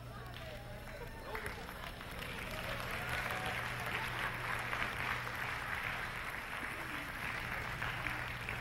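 Audience applauding, the clapping swelling about two seconds in and holding steady, over a steady low hum.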